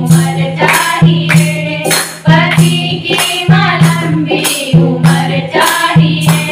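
Women's voices singing a Hindi devotional kirtan together, with hand clapping keeping a steady beat of about two to three claps a second.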